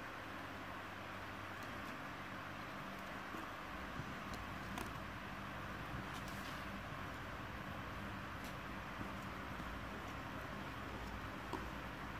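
Wire balloon whisk stirring thick cake batter and flour in a bowl by hand, with a few faint light taps of the whisk against the bowl, over a steady background hiss and hum.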